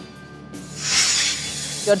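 A whoosh transition sound effect over low background music: a loud hissing swell that rises about half a second in, peaks around a second in and runs into the next headline.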